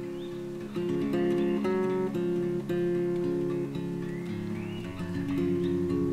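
Background music: an acoustic guitar playing, with notes plucked and strummed at an easy pace.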